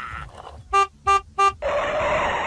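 Animal call sound effect: three short, evenly spaced calls about a third of a second apart, then a longer, noisier call starting near the end.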